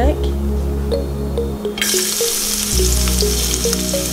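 Chopped garlic hitting hot olive oil in a wok, starting to sizzle suddenly about two seconds in and sizzling steadily from then on, over background music.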